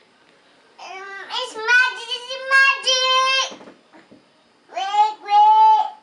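A young child singing in a high voice: one longer phrase of held, drawn-out notes, a short pause, then a second, shorter phrase near the end.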